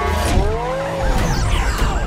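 Movie sound effects of a Porsche sports car: the engine revs and the tyres squeal, with a pitch that rises and falls about half a second in.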